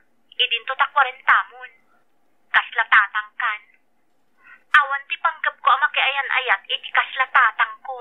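A voice talking over a telephone line: thin, narrow-sounding speech in three short stretches, with a brief click a little past the middle.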